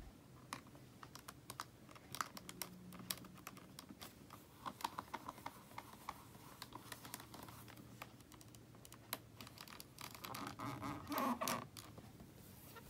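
Faint, irregular light taps and clicks of small hand crafting work at a desk, running in quick clusters.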